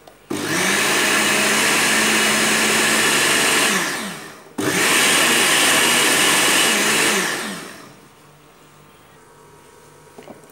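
Moulinex countertop blender motor running in two bursts of about three seconds, each spinning up and then winding down, as it blends a liquid cake batter of eggs, oil, sugar, yogurt and flour in its glass jar.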